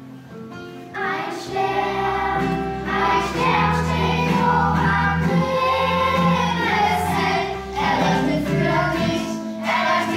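Children's choir singing a Christmas song to guitar accompaniment. The accompaniment plays alone at first, and the voices come in about a second in.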